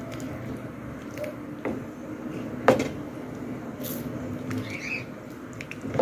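Soup being stirred in a large aluminium pot, with a few clicks of the spoon against the pot and one louder knock about halfway through, over a steady low background hum. A few faint high chirps come and go.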